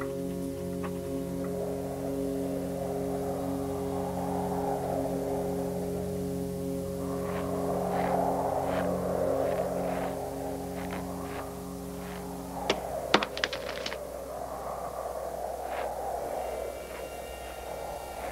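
Orchestral film score holding slow, sustained chords, with a whooshing wind effect that swells and fades. Light clicks come from about seven seconds in, then a short cluster of sharp knocks about thirteen seconds in.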